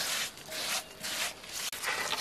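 Hands scraping and rubbing at loose soil in several short, rough strokes, about three in two seconds.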